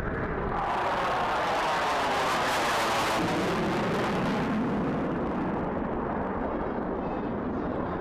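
Jet noise of an F-22 Raptor's twin Pratt & Whitney F119 turbofans in afterburner as the fighter passes: a loud rushing noise that swells about half a second in, peaks in the middle and slowly fades.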